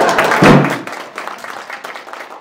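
Audience applauding, loud at first and dying away, with a single thump about half a second in.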